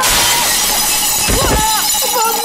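A glass windowpane shattering as a man crashes through it, broken glass showering and tinkling down, with a dull thump about one and a half seconds in.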